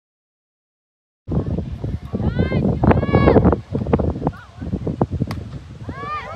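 Silence for about a second, then people at a softball game shouting and cheering, with a few high, rising-and-falling shouts in the middle. Wind buffets the microphone throughout the loud part.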